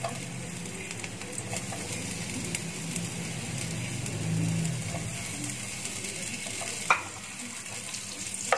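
Sliced onion frying in hot oil in a non-stick pan, with a steady sizzle. A single sharp knock comes near the end.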